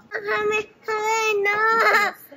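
A young child's high-pitched voice in two drawn-out, singsong phrases, the second longer.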